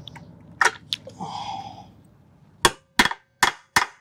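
Hammer blows peening on a seized, corroded bolt gripped in locking pliers on an outboard motor's lower unit, to shock it loose. Two light clicks come first, then four sharp metallic strikes about 0.4 s apart in the second half.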